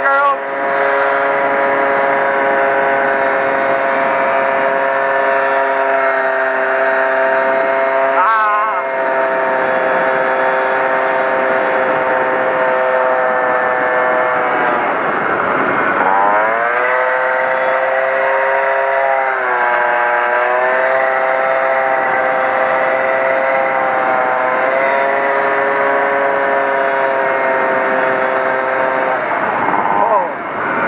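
Honda PA50II Hobbit moped's small two-stroke single-cylinder engine running at a steady speed under way. Its pitch sags about halfway through and then climbs back, with brief wavers about a quarter and two-thirds of the way in.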